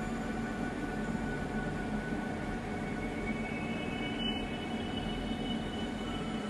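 Steady ambient drone from a soft background music bed, with faint sustained tones and no rhythm; a couple of higher held tones come in a little past halfway.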